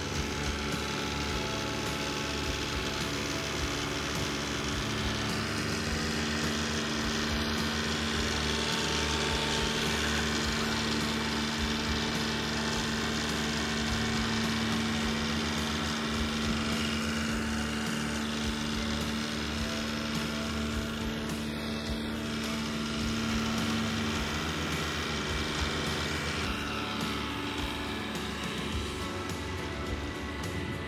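A John Deere compact tractor's diesel engine running at a steady speed as it drives across grass, with music playing alongside.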